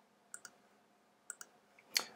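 Quiet, sharp clicks at a computer: a pair of clicks, then about a second later another small cluster, with one more click right at the end.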